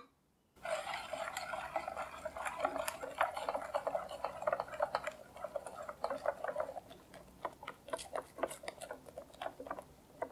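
Wire whisk beating egg yolks and sugar in a glass bowl over a hot water bath, a zabaglione being whipped: rapid, continuous clicking and scraping of the wires against the bowl. After about seven seconds the strokes slow to separate, spaced clicks.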